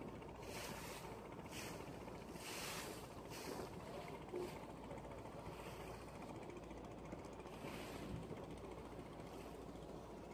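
Wash of river water with wind, short hissing splashes coming every second or so over a steady low rumble.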